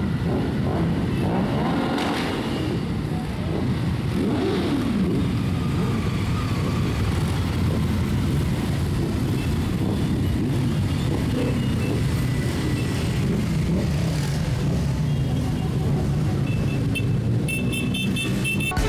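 A group of motorcycles riding past one after another. Their engines overlap and rise and fall in pitch as they rev and pass.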